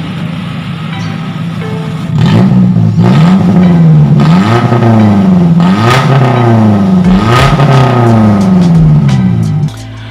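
Car engine running through an aftermarket Spoon Sports racing muffler, steady for about two seconds and then revved again and again, the exhaust note rising and falling in pitch with each blip before it drops back near the end.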